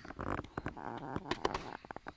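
A man's voice making wordless, wavering sounds, followed by several quick sharp clicks in the second half.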